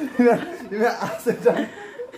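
A man laughing in several short bursts.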